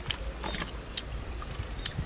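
Sparse crisp clicks and crackles, about one every half second, from eating young kapok fruit as the green pods are chewed and broken apart, over a low steady rumble.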